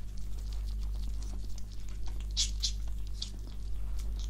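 A small pet stirring as it wakes, with light scratching and rustling and a few sharp ticks about two and a half seconds in, over a steady low electrical hum.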